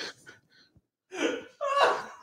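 People laughing, with a gasping breath; the laughter breaks off for a moment just under half a second in and starts again about a second in.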